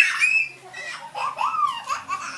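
Young children squealing and giggling in high voices: a short squeal at the start and another rising-then-falling one a little past the middle.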